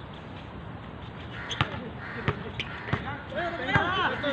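Basketball dribbled on a hard outdoor court: sharp single bounces about every 0.7 seconds, starting about a second and a half in and getting louder. Short calls from the players join in near the end.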